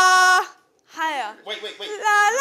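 A sung 'la' held on one steady high note in a group singing warm-up, cutting off about half a second in. After a short silence, a voice slides down in pitch, followed by a few short broken vocal sounds.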